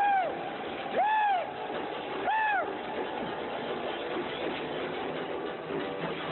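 An animal's cries: three loud yelps, each rising and then falling in pitch, about a second apart, ending about halfway through, over a steady background noise.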